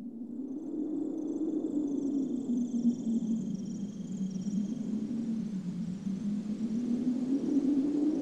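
A low, wavering rumbling drone fades in and holds steady, with faint high twinkling tones above it. It is an ambient intro laid down ahead of the song's acoustic guitar.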